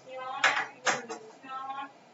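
Two sharp clinks or knocks about half a second apart, with a voice speaking briefly around them.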